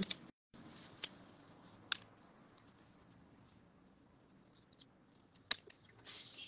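A square of origami paper being turned over and folded into a triangle on a table: a few sparse, short, crisp paper crackles and taps, the loudest about two seconds and five and a half seconds in.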